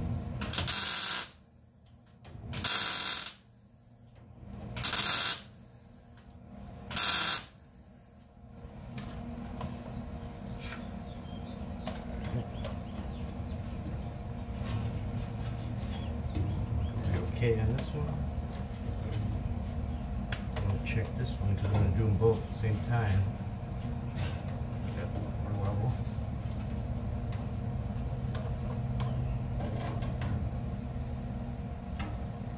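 Welder tack-welding a sheet-steel patch panel: four short bursts of welding about two seconds apart in the first eight seconds. After them come quieter low shop sounds with scattered light clicks.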